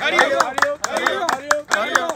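Hands clapping in a steady rhythm, about four claps a second, with voices chanting along in short repeated phrases.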